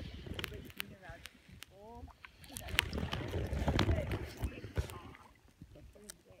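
A paddle stroking through lake water: a swell of sloshing and swishing with several light knocks, loudest between about two and a half and five seconds in.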